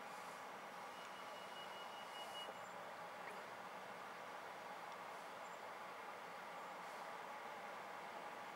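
Steady, faint background noise with no distinct events; a thin high tone sounds for about a second and a half a second into it.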